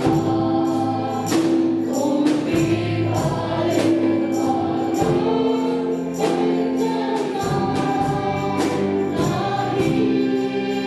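Group of women singing a Zomi-language worship hymn together in long held notes, backed by a band with electric and acoustic guitars and a steady beat of about two strokes a second.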